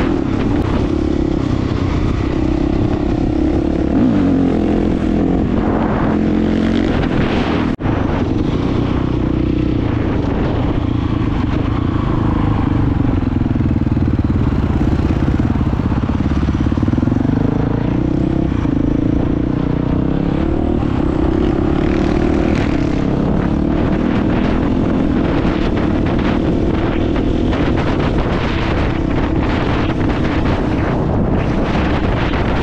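KTM dirt bike engine running under way, its pitch rising and falling with the throttle. The sound dips very briefly about eight seconds in.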